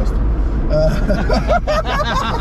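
Two men laughing loudly inside a moving car, starting under a second in, over the steady low drone of engine and road noise in the cabin of an old Zastava Yugo hatchback.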